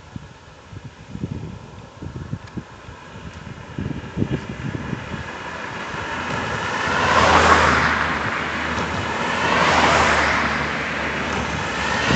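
Cars passing close by on an asphalt road one after another: tyre and engine noise swells to a peak about seven and a half seconds in, again at about ten seconds, and rises once more at the end. Before them, low uneven buffeting on the microphone.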